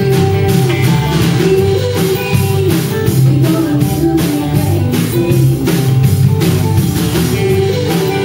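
Live country band playing: acoustic guitar strummed over a steady drum kit beat.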